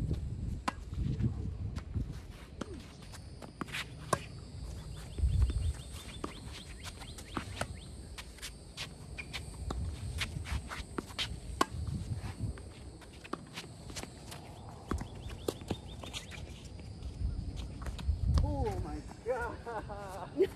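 Tennis being played on an outdoor hard court: sharp pops of the ball off racket strings and bouncing on the court, with quick shoe steps in between. Wind rumbles on the microphone at times, and a brief voice comes near the end.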